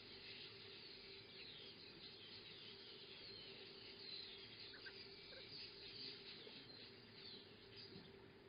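Near silence: faint, distant small birds chirping over a low steady hum.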